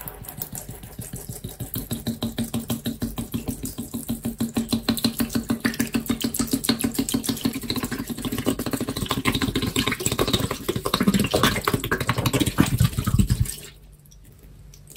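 Dish soap glugging out of an upturned plastic bottle onto a sponge in a sink, a fast, even gurgle of about five pulses a second that grows louder. Near the end it turns rougher and more irregular, then stops suddenly.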